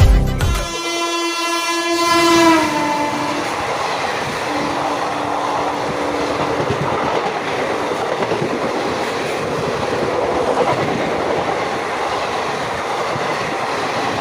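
Train horn sounding about a second in, its pitch dropping as it passes, followed by the steady rush of passenger coaches going by close on the track.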